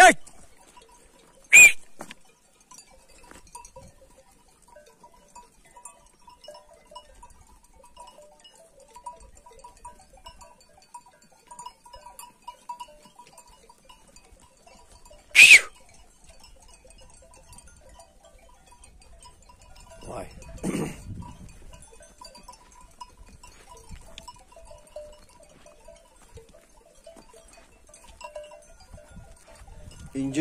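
A flock of sheep grazing, with faint bells tinkling now and then. Two short, sharp, high-pitched calls stand out, one near the start and one about halfway through, and a lower call lasting about a second comes about two-thirds of the way through.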